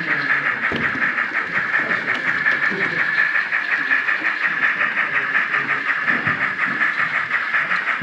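Model steam locomotive on a railway layout giving a steady, evenly pulsed hissing beat, like a fast steam chuff, over faint crowd chatter.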